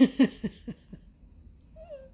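A woman laughing: about five short breathy ha's, each falling in pitch, getting quieter and dying away within the first second.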